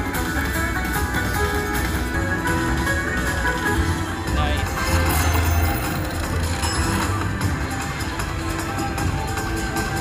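Video slot machine playing its win-celebration music and chiming effects during a free-spin bonus, as a big win is shown on the reels.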